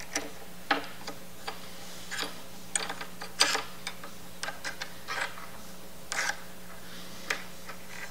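Bolt being tightened with an Allen wrench while a wrench holds the nut beneath: light metal clicks and taps of the tools on the bolt and bracket, coming irregularly throughout.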